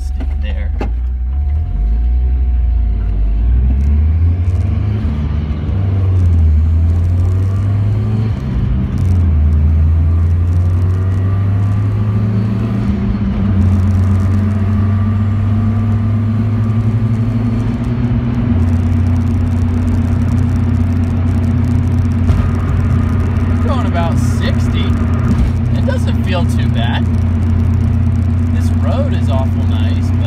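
Ford Festiva's engine and road noise heard from inside the cabin while driving. The engine note rises and drops several times in the first half as the car picks up speed, then holds steady at cruise.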